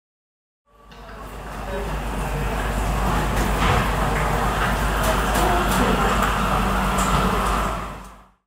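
Railway station platform ambience: a steady rumble and hum with a few faint clicks, fading in about a second in and fading out at the end.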